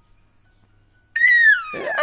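A toddler's high-pitched squeal, starting about a second in and falling steadily in pitch.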